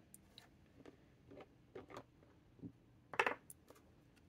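Quiet handling at a desk as a small glass ink bottle is uncapped: faint ticks and rustles, then one louder clack a little after three seconds in.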